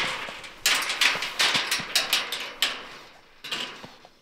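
Clanking and rattling of a steel wire-mesh hog cage trap as the trapped feral hog moves about inside and a metal rod is pushed in through the mesh: a run of irregular sharp knocks that thins out near the end.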